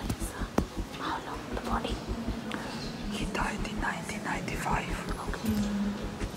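Hushed whispering voices, short breathy phrases with no full-voiced speech.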